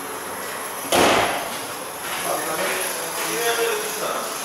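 A single hard slam about a second in, dying away over about half a second: the Honda CR-V's bonnet being shut.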